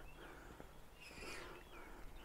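Faint bird calls: a few short, sliding chirps, one near the start and another near the end, over quiet outdoor background.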